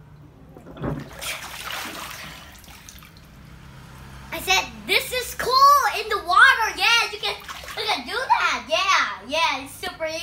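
Water splashing and sloshing in a small inflatable paddling pool as a child comes up out of it about a second in. From about four seconds a child's voice follows, its pitch sliding up and down, and it is the loudest sound.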